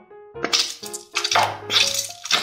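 About five quick, crisp crinkling and rattling bursts as a small paper medicine packet is picked up and handled, the loudest in the second half, over light background music.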